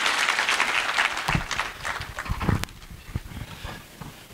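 Audience clapping after a speech ends, a dense patter of hand claps that dies away about three seconds in. A few low bumps on the microphone come through near the middle.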